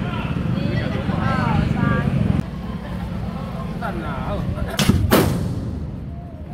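Two loud firework blasts from large salute tubes set on the street, in quick succession near the end, the second trailing off.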